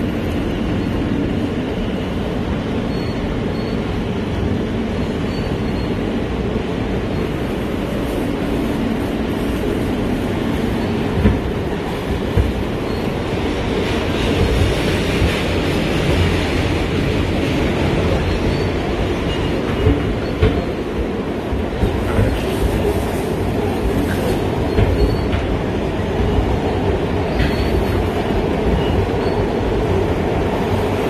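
Subway train running, heard from inside the car: a steady loud rumble of wheels on rails, with a few sharp clacks about ten seconds in and again later on.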